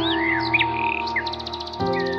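Music with held chords that change just before the end, layered with bird chirps and gliding calls and a quick trill about a second and a half in.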